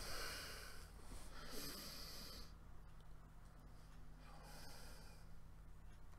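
A man breathing audibly, three breaths about a second each, with a few faint clicks between the second and third.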